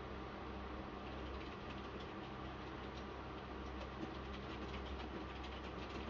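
Steady low background hum with a few faint ticks.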